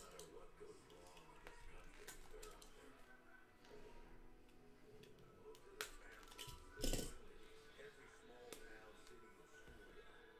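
Cardboard trading-card boxes being handled on a table: faint scattered clicks and rustles, with one sharp knock about seven seconds in as a box is set down.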